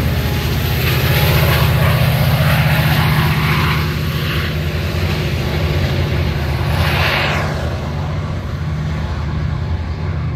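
Caltrain MP36PH-3C diesel-electric locomotive running under power as the train pulls away from the platform, a steady low engine drone that slowly gets quieter.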